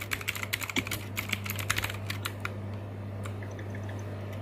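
Typing on a computer keyboard: a quick run of key clicks that stops about two and a half seconds in, over a steady low hum.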